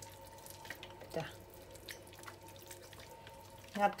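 Faint wet, sticky squishing and small clicks of bare hands packing cooked sticky rice and garlic into a raw tilapia in a stainless-steel bowl, over a faint steady hum.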